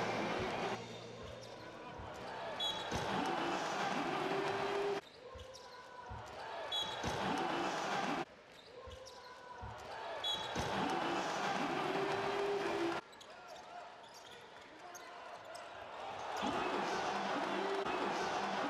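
Basketball arena sound: the ball bouncing on the court and crowd noise with shouts. The same few seconds of play are heard several times over, with abrupt cuts in level between them.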